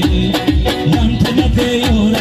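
Live Tajik folk music: an electronic keyboard with a steady, fast drum beat, a flute, and a man singing into a microphone.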